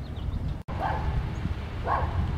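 A dog barking twice, about a second apart, over a low rumble of wind on the microphone.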